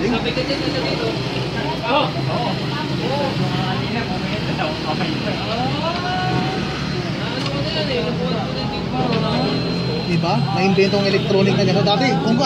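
Cordless drill/driver running steadily, driving a bolt through a top-box mounting plate, with a steady motor drone and a thin high whine. People talk in the background.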